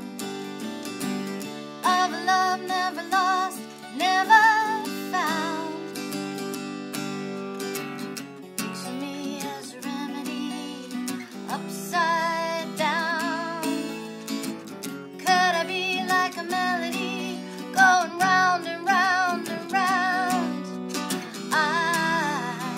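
A woman singing a pop song with vibrato, in phrases, accompanied by two acoustic guitars, one of them a 12-string, played together.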